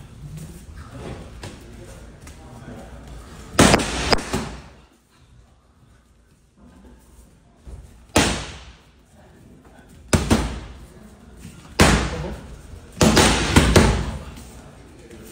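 Gloved punches smacking into focus mitts during pad work: sharp hits in five short groups, the last a quick flurry near the end.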